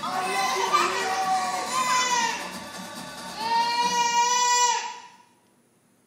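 A young child's high voice over music, bending in pitch, then one long high note that stops abruptly about five seconds in.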